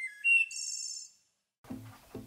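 A small bird calling: a few short high whistled notes, then a quick high trill lasting about half a second.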